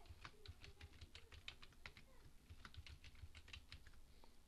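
Computer keyboard typing: a quick, even run of faint key clicks, about five or six a second, as a password is typed in.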